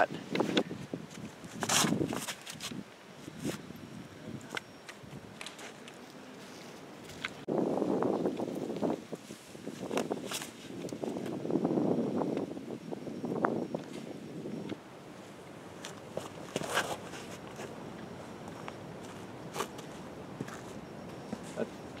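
Footsteps walking through dry fallen leaves and grass, heard as scattered, uneven steps.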